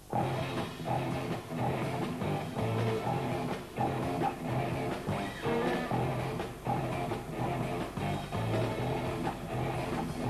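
Live rock band kicking in all at once: electric guitar, bass guitar and drum kit playing together. The bass plays a repeated low riff.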